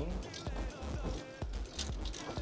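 Faint background music over the low rumble of a moving golf cart, with scattered clicks and knocks from the clubs rattling in the bags behind the seats.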